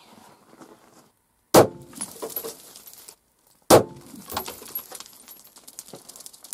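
Two .223 rifle shots from an AR-style rifle, about two seconds apart, each dying away over about a second.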